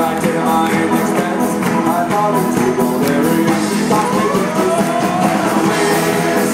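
Live folk band playing an up-tempo Celtic-Americana tune on banjo, acoustic guitar and drums, loud and steady with a regular beat. A note slides upward about four seconds in.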